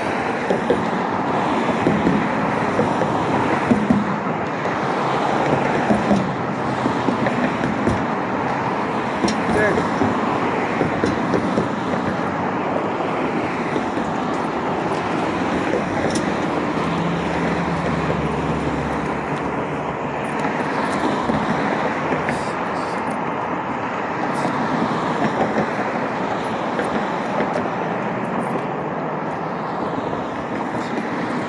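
Steady road traffic from cars passing on a street, with a low engine hum as one vehicle goes by just past the middle.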